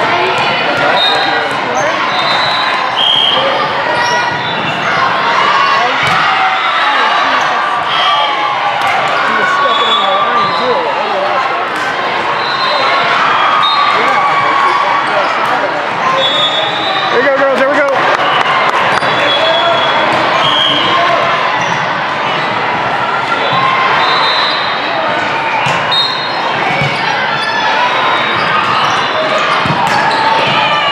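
Indoor volleyball rally sounds echoing in a large hall: the ball being struck and bounced on the court, short sneaker squeaks on the floor, and a steady babble of voices from players and spectators.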